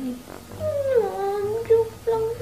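A high, drawn-out cry that falls in pitch and lasts about a second, after a short 'eh'.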